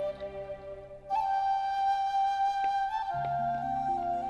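Flute playing a slow instrumental version of the series' opening theme. A held note fades out, then about a second in a higher note is held. Near three seconds in it steps down slightly as low accompanying notes come in.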